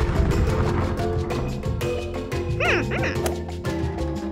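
Cartoon explosion sound effect that hits at the start and fades over about a second, over background music. Near the end, a brief run of high, wavering yelps.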